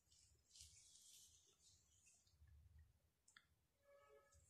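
Near silence, with faint soft swishes of hands smoothing styling cream through a section of wet curly hair, and a few faint clicks about three seconds in.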